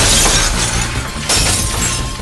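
Glass being smashed and shattering. One loud crash comes at the start and a second crash of breaking glass follows over a second later.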